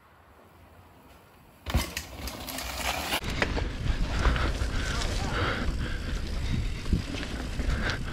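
Near silence for the first second and a half or so, then a mountain bike rolling down a dirt trail: steady tyre noise on dirt with chain and frame rattle and frequent knocks over bumps.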